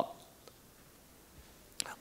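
A pause in a man's speech through a microphone: near silence with faint room tone, and one short, sharp breathy sound near the end.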